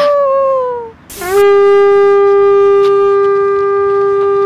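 Dog howl sound effect: a held howl falls in pitch and fades within the first second. After a short burst of hiss, a second, very steady, horn-like howl sounds for about three and a half seconds.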